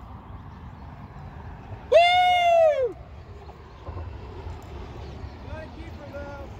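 A loud, drawn-out whooping shout about two seconds in, rising and then falling in pitch over just under a second. Steady wind rumble on the phone's microphone runs underneath.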